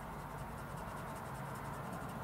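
Crayola coloured pencil shading back and forth on paper, a steady soft scratching as a swatch is filled in.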